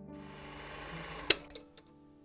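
Film projector running with a rapid mechanical rattle, then a single sharp loud click past halfway as it is switched off, followed by two small clicks.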